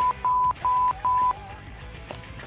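Censor bleeps: a steady, high beep tone in four short bursts, laid over shouted swearing and stopping a little past a second in.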